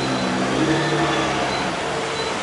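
A road vehicle's engine running amid steady traffic noise, its hum rising a little in pitch about half a second in.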